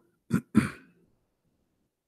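A man clearing his throat: two short rasping bursts close together early on, then silence.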